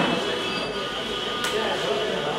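A steady high-pitched whistle made of a few close tones held together, over a murmur of background voices.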